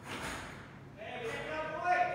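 Indistinct voices in a large, echoing room, one held louder and higher near the end.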